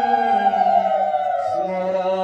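Hindu devotional chanting: a voice holds long notes, sliding down in pitch about a second in and settling on a lower note.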